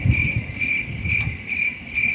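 A cricket trilling steadily at a high pitch, pulsing slightly, over a low rumble.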